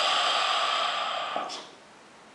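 A hookah being drawn on: a steady airy rush of air pulled through the pipe and water. It stops about one and a half seconds in with a small click.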